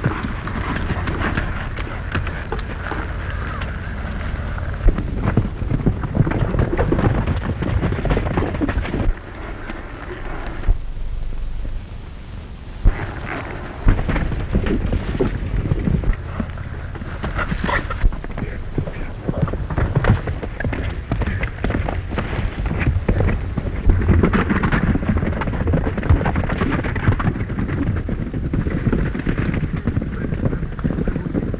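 Horses galloping, a dense rapid drumming of hoofbeats mixed with crashing brush, over an old optical soundtrack's hiss. A few sharp, louder cracks stand out from it, and it drops back briefly about a third of the way in.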